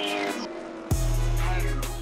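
Background music for the highlights: steady tones with a rising sweep, a brief dip, then a deep bass note coming in suddenly about a second in and holding.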